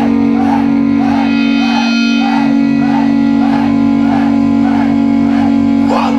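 Live rock music: an electric guitar holds one loud sustained note through an amplifier, with a higher wavering figure repeating about twice a second over it.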